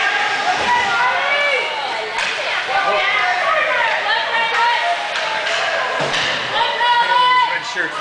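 Several voices of spectators and players talking and calling out over one another in an ice rink, with a couple of sharp knocks, such as a puck or stick hitting the boards.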